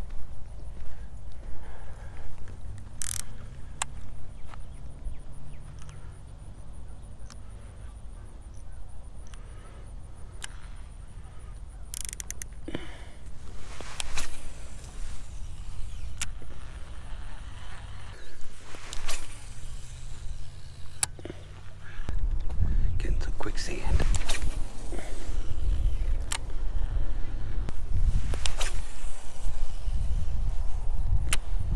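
Wind rumbling on the microphone, heavier for the last third, with scattered sharp clicks from handling a baitcasting rod and reel while casting and cranking in a lure.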